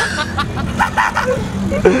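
People laughing and calling out in short bursts over a steady low hum.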